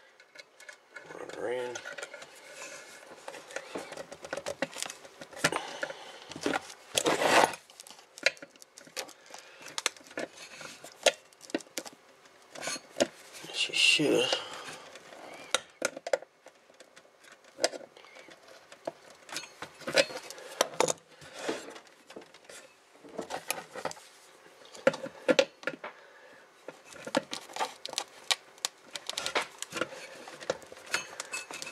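Steel pliers clicking, scraping and clinking against a power supply's sheet-metal rear panel in irregular taps, as a tape-wrapped AC cord is forced into its grommet in the panel hole.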